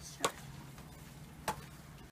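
Two short, sharp taps about a second apart from small garden shovels knocking against a plant pot while dirt is pushed in around a shrub.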